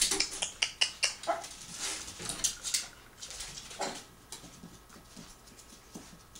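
Dogs pawing and scratching at the gap under a wooden door: a quick run of claw scratches and clicks in the first three seconds, thinning out after about four seconds.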